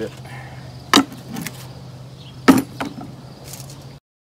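Wooden boards knocking as they are set down on a wooden frame as a weight: two sharp knocks about a second and a half apart, each followed by a lighter tap. A steady low hum runs underneath.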